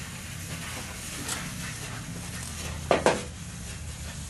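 A small battery-powered handheld brush running with a steady low motor hum while it is scrubbed over a flat sheet, with light scraping. Two sharp knocks close together about three seconds in.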